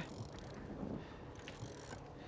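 Faint, steady wind and sea noise on a small boat, with a low hum underneath.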